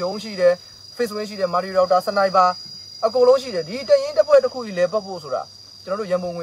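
A man talking in short phrases with brief pauses, over a continuous, steady high-pitched insect drone of crickets.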